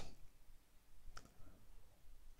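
Faint clicks and scratches of a stylus writing on a pen tablet, with one sharper click a little over halfway through.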